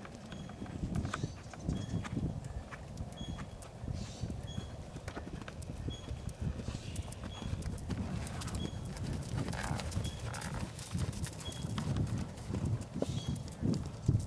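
Horse cantering under a rider on a sand arena: a steady run of soft, muffled hoofbeats in a rolling canter rhythm.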